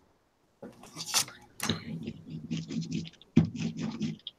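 Paper and card pieces being handled on a tabletop, with short rustling, scratchy strokes starting about half a second in.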